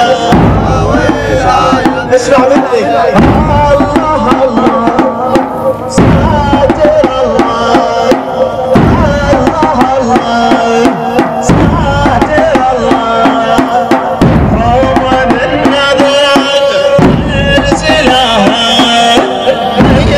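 A male radood chanting a Shia latmiya (lament) in Arabic over a slow, heavy percussive beat that falls about every three seconds.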